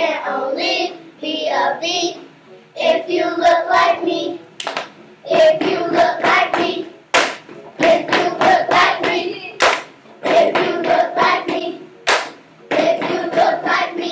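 A group of children singing together in short phrases, with a sharp clap about every two and a half seconds.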